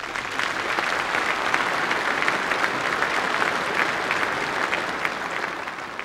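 A large audience applauding: dense, steady clapping that starts suddenly and begins to die down near the end.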